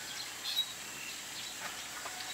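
Quiet outdoor ambience: a steady background hiss with a single short bird chirp about half a second in.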